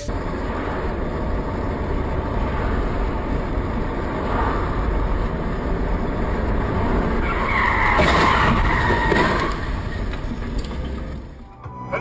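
Road and cabin noise from a dashcam car driving in traffic. A tyre screech starts about seven seconds in and lasts roughly two seconds.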